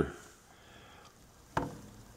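Faint room tone with a single sharp click about one and a half seconds in, ringing briefly.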